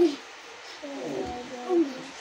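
Wordless vocal sounds from people play-wrestling: a loud voice cutting off at the start, then quieter short strained sounds about a second in and near the end.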